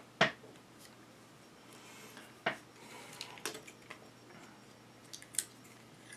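Sharp clicks and light taps from hands fitting a small FPV video transmitter into a quadcopter frame. Two louder clicks, one just after the start and one about two and a half seconds in, with fainter ticks after.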